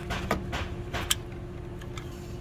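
A few light metallic clicks and scrapes, one sharper click about a second in, from a thin screwdriver tip prying at a locking clip, over a steady low hum.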